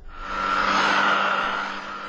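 Gtech AirRam cordless upright vacuum cleaner running on carpet: a steady motor noise with a light whine, fading in at the start.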